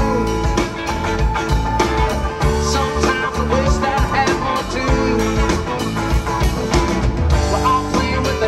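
Live rock band playing an instrumental passage: drum kit, bass, keyboard and guitars, with a lead line of bending notes over the rhythm.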